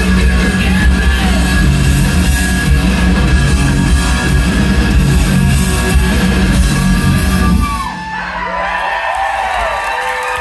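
Live rock band playing loudly with electric guitars, bass and drums in a large hall. Near the end the band stops, leaving a fading held note while the crowd whoops.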